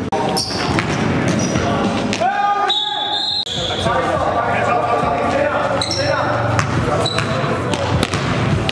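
Basketball bouncing on a gym's hardwood floor with short high sneaker squeaks, under voices echoing in a large hall.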